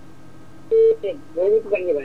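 A short, steady telephone-line beep, the loudest sound here, under a second in, followed by a person talking over the phone line.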